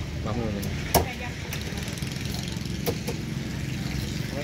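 A steady low engine rumble. A brief voice comes in at the start, and two sharp knocks sound, a loud one about a second in and a weaker one near three seconds.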